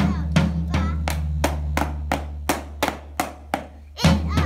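Drum struck with sticks in an even beat, about three hits a second, over a backing music track with a steady bass. The backing thins out in the second half and the playing quietens just before the end.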